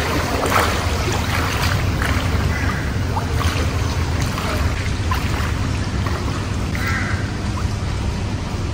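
Steady low rumble of outdoor background noise, with short sharp animal-like calls scattered through it and one brief pitched call near the end.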